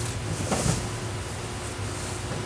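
Steady low mechanical hum over a faint hiss of outdoor background noise.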